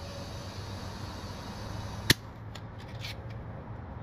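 Compressed air hissing through a tire chuck held on a motorcycle tire's Schrader valve for about two seconds as the tire is topped up. It ends in one sharp click as the chuck comes off the valve stem, followed by a few faint clicks.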